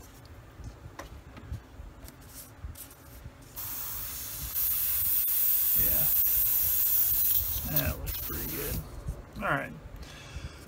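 Neo for Iwata TRN1 trigger airbrush spraying a steady hiss of air onto a paper towel for about five seconds, starting about three and a half seconds in and growing stronger a second later. It is a final test shot after cleaning, to check that the airbrush sprays clean.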